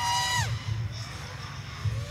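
A single high whoop from a person: the pitch rises, holds briefly, then falls away about half a second in, over a steady low background hum.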